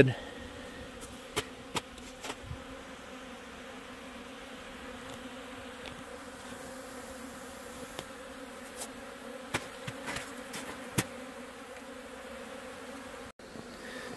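Honeybees buzzing steadily around the entrances of their wintered hives, out on cleansing flights. A few faint clicks sound over the hum, and it cuts out briefly near the end.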